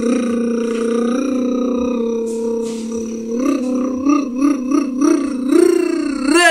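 A man's long drawn-out vocal call, held on one note for about three seconds, then wavering up and down in pitch and sliding down at the end.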